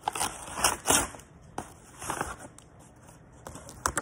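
Paper mailer envelope rustling and crinkling as a cap is pulled out of it, loudest in the first second, then a few softer crackles.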